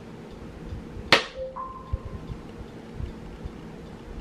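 A single sharp click about a second in, followed by two short electronic beeps, a lower one and then a higher, longer one, with faint low bumps of handling throughout.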